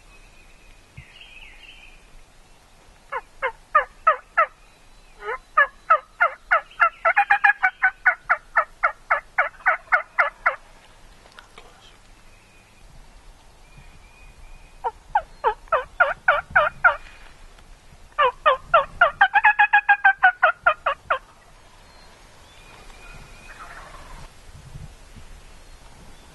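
Wild turkey calling in four runs of short, rapid, evenly spaced notes, about five a second; the longest run lasts about five seconds.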